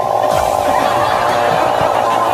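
A man's voice held in a steady drone through a handheld megaphone, a sound likened to throat singing.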